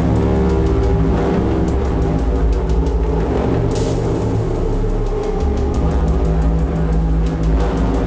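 Dark improvised electronic music from hardware drum machines and synths (Perkons HD-01, Pulsar 23): a thick, low droning bed of steady bass tones with runs of fast thin ticks over it. A short burst of noise comes about four seconds in.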